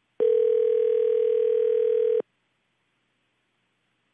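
Ringback tone on a telephone line: one two-second ring of a steady, slightly beating tone about a quarter second in, stopping abruptly. It is the sound of the called phone ringing at the far end, not yet answered.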